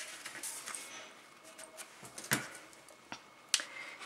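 Card calendar sheets rustling as they are handled, then a few sharp clicks, the loudest a little over two seconds in, as the metal Crop-A-Dile hole punch is picked up and fitted over the edge of the sheets.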